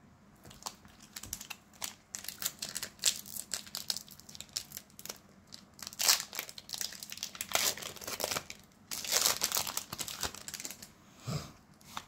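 Foil Pokémon booster pack wrapper crinkling in the hands as it is torn open: a run of quick, irregular crackles, loudest about halfway through and again in a longer burst about three quarters of the way in.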